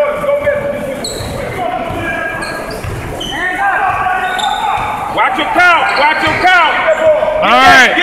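Basketball game on a hardwood gym floor: the ball bouncing as it is dribbled, with many short sneaker squeaks that come thick and fast near the end as play picks up.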